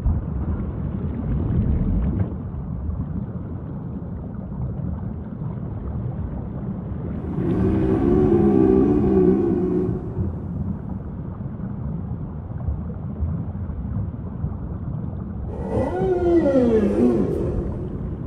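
Whale calls over a steady low background noise: a long wavering call about eight seconds in, then a moan that slides down in pitch near the end.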